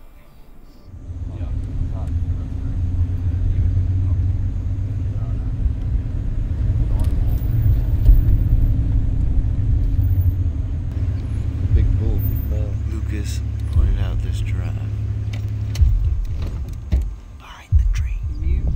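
Safari vehicle's engine and rumble as it drives along, steady throughout, with a brief drop shortly before the end.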